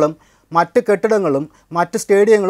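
Only speech: a man talking in Malayalam, with a short pause near the start.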